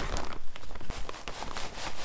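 Plastic bags of perlite and vermiculite crinkling as they are handled and tipped, with small granules running and pattering into a plastic tote: a dense rustle of many fine ticks.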